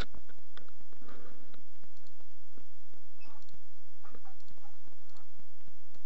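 A few faint, scattered computer mouse clicks over a low, steady hum.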